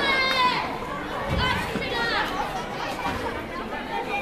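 Children shouting and chattering, with high-pitched calls rising and falling over the talk of a small crowd.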